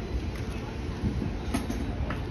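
Low, steady rumble of an approaching train, with a few faint clicks and knocks.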